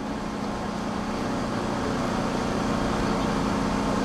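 Steady street traffic with a low engine drone, growing slowly louder.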